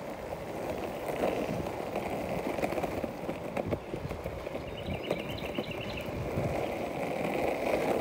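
Skateboard wheels rolling steadily while coasting downhill on rough, cracked asphalt, a continuous rumble with many small clicks as the wheels cross the cracks.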